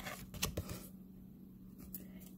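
A few soft clicks and taps of tarot cards being handled in the first second, then a quiet room with a faint steady low hum.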